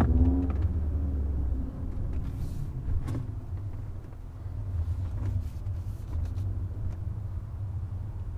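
Audi RS3's five-cylinder turbo engine running with a low rumble, heard inside the cabin as the car moves at low speed; it is louder for the first second and a half, then settles to a steady low drone.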